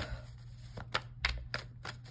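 Tarot cards handled in the hand, giving several light, separate clicks as the deck is worked. A low steady hum runs underneath.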